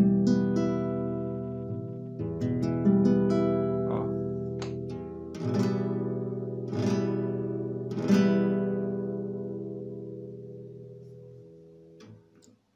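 Acoustic guitar playing an E minor chord with the low sixth string in the bass, strummed and picked about a dozen times. The last strum, about eight seconds in, is left to ring and fades out.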